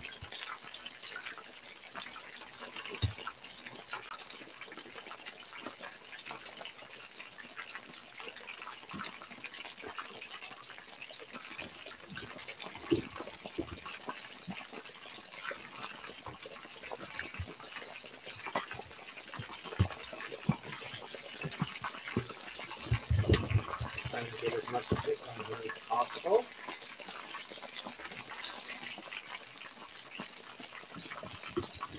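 Battered chicken deep-frying in a large cast iron pan of hot oil: a steady sizzle with many scattered crackles and pops, and a louder cluster of knocks about 23 to 26 seconds in.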